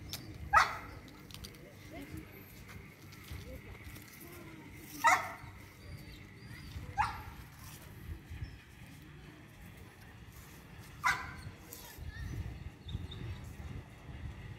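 A dog barking four times: single sharp barks spaced a few seconds apart, the first the loudest.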